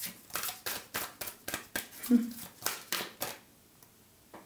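A deck of oracle cards being shuffled by hand: a quick run of light card clicks and slaps, several a second, that stops about three and a half seconds in.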